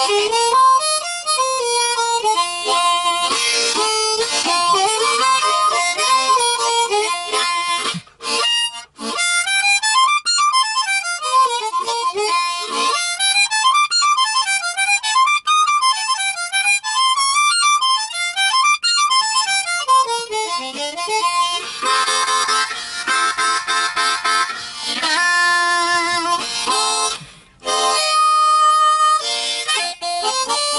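Diatonic blues harmonica played solo as a warm-up: runs of single notes, a stretch of notes swooping up and down in the middle, then fuller chords later on. It breaks off briefly about eight seconds in and again near the end.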